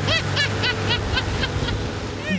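A woman's high-pitched laughter, a quick run of 'ha-ha' bursts about four a second that weakens toward the end, over the steady low drone of the hydrofoil boat's motor and the rush of wind and spray.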